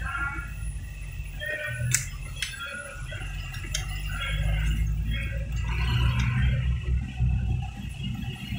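Low rumble of a car's engine and tyres heard from inside the cabin while driving slowly, with faint, indistinct voices and a few sharp clicks about two and four seconds in.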